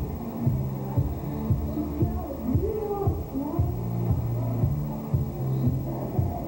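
Music with a steady beat of about two a second and a held bass line, with some voices beneath it.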